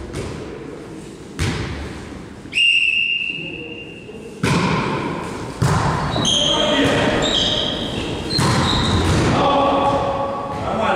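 Indoor volleyball rally: a whistle blast lasting nearly two seconds, then sharp hand-on-ball hits from the serve and pass echoing in a large gym hall, with players calling out over the play.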